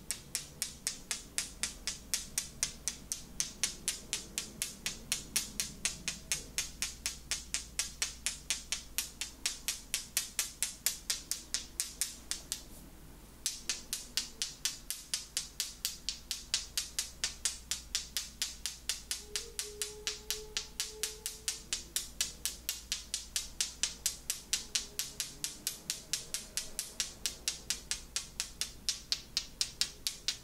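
Fast, even crisp clicks from hands working close to the microphone in an ASMR Reiki plucking and tapping session, about four a second, with one short break about thirteen seconds in.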